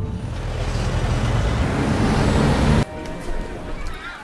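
City street traffic: a dense rumble of cars that cuts off suddenly near the end, leaving a quieter stretch with a few faint steady tones.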